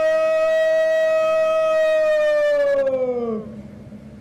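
A parade commander's drawn-out shouted word of command, held loud and steady on one pitch for about three seconds, then dropping in pitch and dying away near the end.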